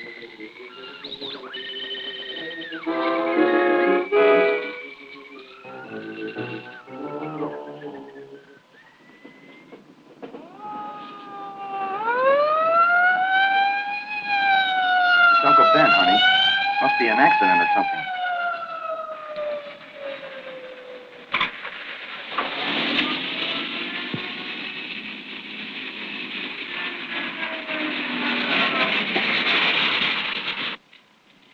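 Film soundtrack: music at first, then a siren wailing slowly up and down for several seconds, then a steady rush of car engine and road noise for the last eight seconds or so.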